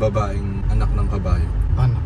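A man's voice inside a car cabin, over the car's steady low rumble.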